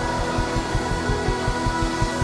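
Live pop music from a band and a large youth choir: a long held chord over a steady kick-drum beat.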